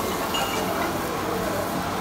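Steady, even background noise of a restaurant kitchen at a hot flat griddle, with no single sound standing out.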